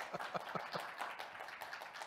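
Audience applauding: many hands clapping unevenly at a fairly steady level.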